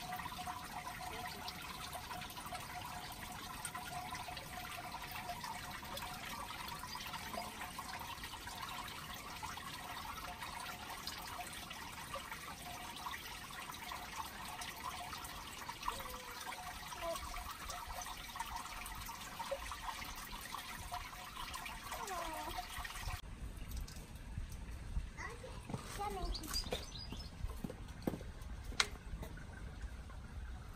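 Faint outdoor background: a steady hiss with faint, indistinct voices. About three quarters of the way through it cuts to a quieter background with a low rumble and a few faint clicks.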